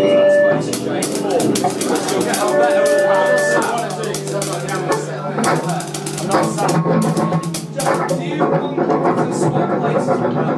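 Drum kit being played loosely during a soundcheck: a quick, irregular run of cymbal and drum strikes, with a few short held notes from another instrument over a steady low hum, and indistinct chatter underneath.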